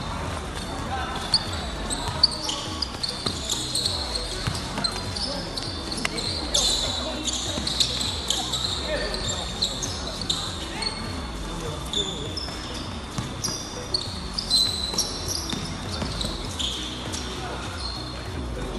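Live basketball game play: a ball bouncing on a hard court with scattered sharp thuds, and many brief high-pitched squeaks of sneakers on the court surface.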